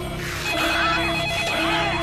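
Desk telephone ringing with an electronic warble that starts about half a second in, over a low, steady musical tone.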